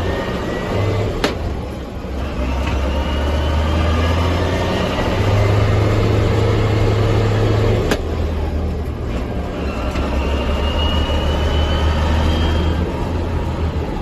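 JCB Fastrac 3185 tractor's diesel engine pulling on the road, heard from inside the cab. Its note steps up and down several times as the auto-shift transmission changes through the gears, with a faint rising whine between shifts and a couple of light clicks.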